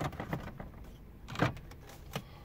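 Plastic upper dashboard trim cover of a Dodge Dart being pulled off by hand, its spring retaining clips letting go: a few faint clicks at the start and one sharp snap about one and a half seconds in, over light rustling of the plastic.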